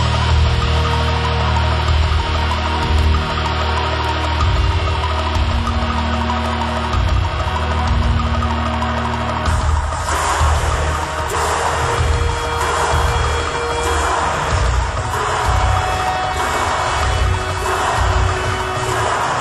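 Instrumental passage of a gothic symphonic black metal song: a heavy, droning low end with long held notes above it, then about halfway through the sound fills out, brighter and denser, as the playing picks up.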